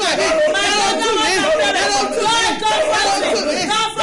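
Speech only: a woman praying aloud, fast and without pause, in words the transcript did not catch.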